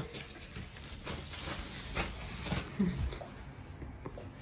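Faint rustling and light taps of a tissue and phone being handled while dusting, with a brief voiced hum about three quarters of the way through.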